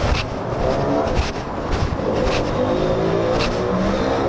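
A motor vehicle engine running close by in street traffic, its pitch drifting slowly up and down, with a few short knocks.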